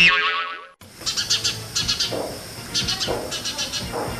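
A comic 'boing' sound effect at the start: a sudden high tone that glides down and fades within a second. It is followed by a steady night-time background of short, high chirps repeating every few tenths of a second.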